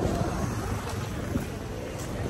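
Wind buffeting a handheld phone's microphone: a steady, rough low rumble.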